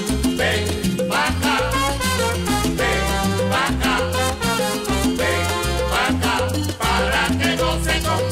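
Salsa band playing an instrumental passage with no singing: trumpet lines over a moving bass line and steady Latin percussion.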